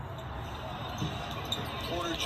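Basketball bouncing on a hardwood court over steady arena crowd noise, heard through the game broadcast.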